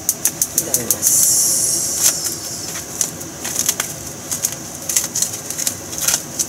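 Cooking oil heating in a speckled non-stick wok, crackling and spitting with many irregular sharp pops, with a brief sizzling hiss about a second in.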